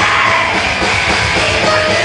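Death/black metal band playing live, with electric guitars and a vocalist at the microphone, heard from among the audience.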